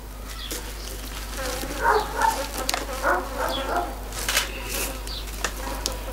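Green berceo (Stipa gigantea) grass braid rustling and crackling in the hands as its end is worked and pulled tight into a knot.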